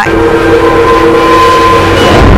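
Loud news-channel logo sting: a rushing whoosh under a held chord of steady horn-like tones, which drop out near the end.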